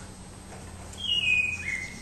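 A high whistling chirp about halfway in, lasting about a second and falling in pitch in two steps.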